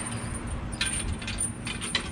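Several sharp metal clicks and clanks in the second half, from a car tow dolly's hitch coupler being worked by hand onto the ball of a small hand-moved trailer dolly.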